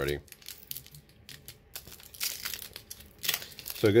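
Foil wrapper of a Pokémon TCG booster pack crinkling and tearing as it is pulled open by hand. It starts as faint scattered rustles and turns into louder, denser crinkling in the second half.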